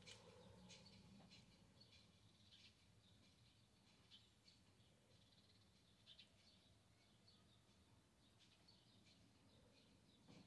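Near silence: room tone with faint, scattered little ticks.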